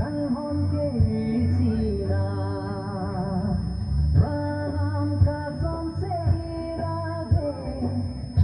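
Karbi gospel song: singing over a band with a steady bass beat and drum hits.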